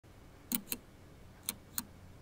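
Computer keys clicking: two pairs of short, sharp clicks about a second apart, over quiet room tone.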